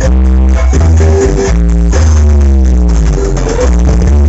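Loud electronic dance music played through a large sound-system rig stacked with 24 subwoofers, with heavy, sustained bass notes and a falling synth line partway through.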